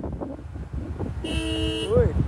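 A vehicle horn sounds once, a steady chord of several notes lasting about half a second, starting a little past a second in. Underneath it is a low rumble of wind on the microphone from riding in the open.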